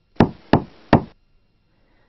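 Three knocks on a door, a little under half a second apart.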